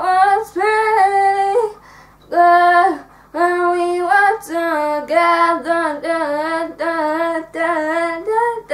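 A young girl singing without accompaniment, phrases of held, steady notes broken by short pauses for breath.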